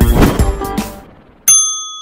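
Music with drum hits dies away over the first second. About one and a half seconds in comes a single struck, bell-like ding that rings on as a clear tone and fades slowly.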